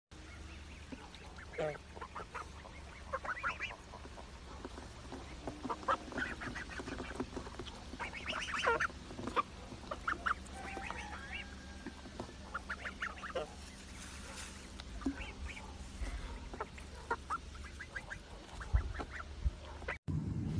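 A flock of white domestic geese calling with short honks, many calls overlapping and scattered irregularly.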